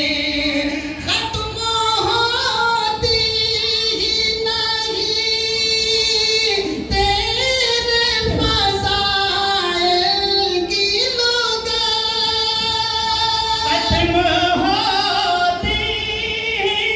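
Urdu devotional naat sung unaccompanied by a man's voice through a stage microphone, with long, drawn-out notes that waver in pitch.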